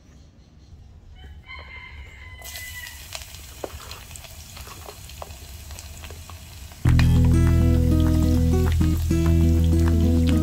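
A rooster crows once, faintly, about a second in. Then chopped garlic sizzles in hot oil in an electric cooking pot as a steady hiss. About seven seconds in, louder background music with guitar takes over.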